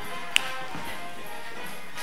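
Background music with held notes, and one sharp tap of a dancer's heeled shoe striking a wooden floor about a third of a second in.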